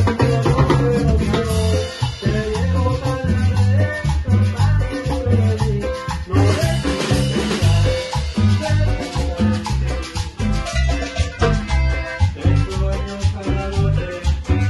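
Live band playing an upbeat Latin tropical dance tune, with a steady bass and drum beat under electric guitar.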